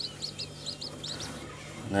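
Newly hatched Japanese quail and chicken chicks peeping: a steady run of short, high cheeps, several a second.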